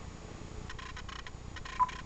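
A few short single-pitch key-press beeps from an Icom IC-7000 transceiver as a frequency is keyed in digit by digit, with faint button clicks. The clearest beep comes near the end.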